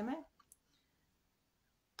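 A woman's voice trails off at the start, a single faint click about half a second in, then near silence: room tone.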